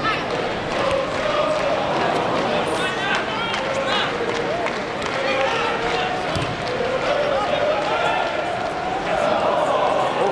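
Football stadium crowd: a steady, unbroken noise of many spectators' voices talking and calling out, with some voices holding long notes.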